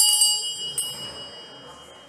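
A small bell rung, its bright ringing dying away over about two seconds, with a lighter strike just under a second in.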